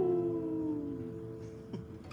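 A strummed acoustic guitar chord is left ringing and slowly fading. Over it a single voice holds one drawn-out note that rises at first and then slides slowly down for about a second. Near the end comes a short dipping vocal sound.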